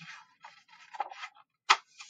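Paper rustling and sliding as a page of a hardcover picture book is turned, followed near the end by one sharp click.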